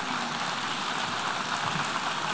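Audience applauding steadily: a dense, even patter of many hands clapping.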